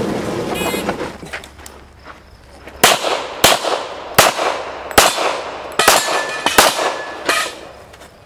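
A shot timer's short electronic start beep, then a handgun fired seven times, one shot about every three-quarters of a second, each crack with a ringing echo.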